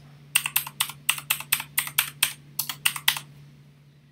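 Computer keyboard being typed on: a quick, even run of about a dozen key presses over some three seconds, entering a 12-digit serial number.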